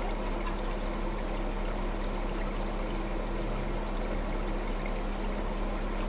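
A vehicle engine idling steadily: a constant low hum under an even rushing noise.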